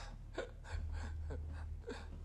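A gravely irradiated man breathing raggedly in short gasps, about one every half second, over a steady low hum.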